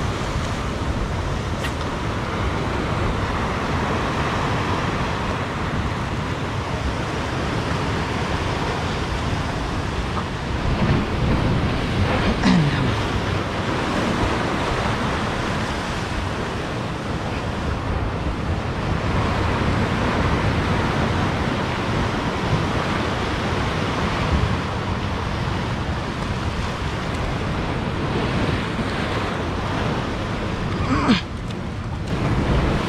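Ocean surf breaking over rocks at the water's edge, a steady rush of noise, with wind buffeting the microphone.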